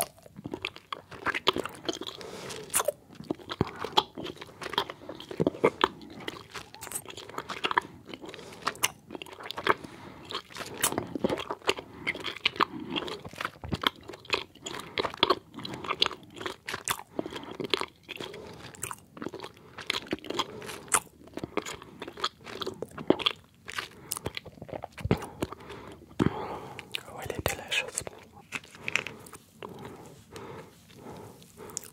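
Close-miked chewing of soft gummy candies: sticky, wet smacking mouth sounds with many small irregular clicks each second.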